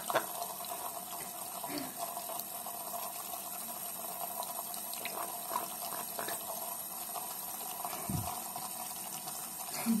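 Tap water running steadily in a thin stream into a sink basin.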